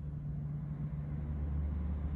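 A steady low rumble of background noise, with no other sound standing out.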